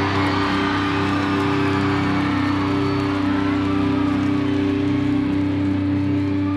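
Rock band's electric guitars through Marshall amplifiers holding one sustained chord that rings on steadily, the closing chord of the song.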